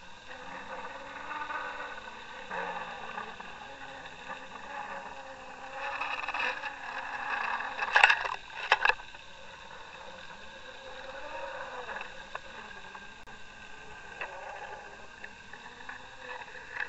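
Boat engine and propeller noise heard underwater through a camera housing: a steady whine of several tones over a faint wavering low hum, with a few sharp clicks about eight seconds in.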